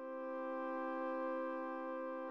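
Computer-generated orchestral accompaniment for an opera scene, with the voice part left out, holding one sustained chord steadily.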